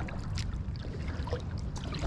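Water lapping and trickling against a kayak hull in a flowing tidal creek, with a faint click about half a second in.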